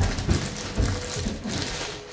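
Clear plastic bag crinkling and rustling in irregular bursts as the slippers inside it are handled.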